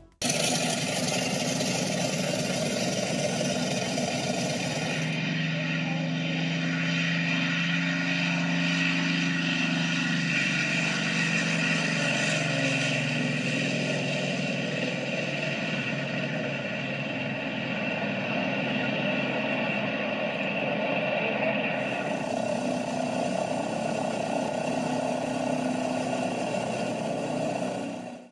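Twin radial piston engines of a Beech AT-11 aircraft running, a steady engine drone with a low hum whose pitch shifts slightly.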